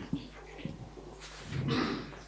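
Faint rustling and small knocks, with a louder rustle near the end.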